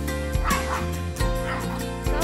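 Small dogs barking during rough play, a burst about half a second in and another shortly after the middle, over background music.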